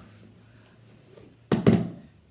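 Djembe hand drum struck twice in quick succession about one and a half seconds in, two loud, deep hand slaps on the drumhead.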